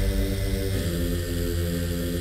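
Early-1990s techno track: held chords over a heavy bass, the chord shifting about two-thirds of a second in.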